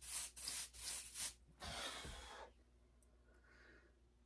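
A quick run of about five short rubbing strokes, then one longer stroke that stops about two and a half seconds in.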